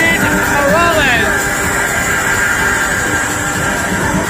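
Loud house music over a club sound system, heard from within the crowd, with a voice gliding up and down in pitch in the first second or so.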